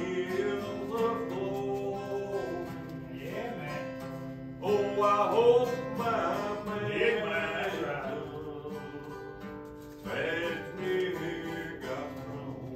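Acoustic guitar playing a slow country gospel tune, with a man's voice singing along in phrases of a second or two.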